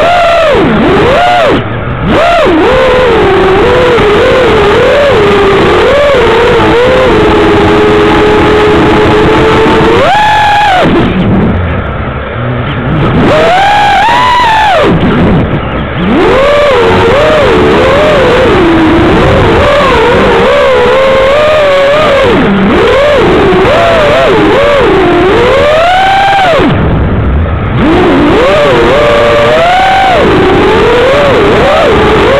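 FPV quadcopter's brushless motors whining over prop and wind noise, the pitch swooping up and down constantly with the throttle. It holds a steady pitch for a couple of seconds about eight seconds in, and the sound drops away briefly a few times as the throttle is chopped.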